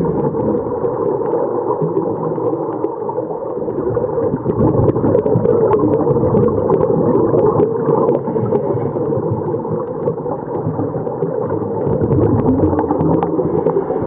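Underwater scuba dive audio: a steady, muffled rumble of water around the camera housing. A hiss of exhaled regulator bubbles comes about eight seconds in and again at the end.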